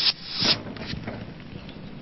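A man straining to lift a grand piano on his back, with two sharp, noisy breaths of effort in the first half second, the second rising to a peak, then only faint room sound with a few small ticks.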